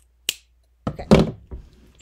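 Scissors snipping once through lace, a short sharp click, followed about a second in by a louder thunk.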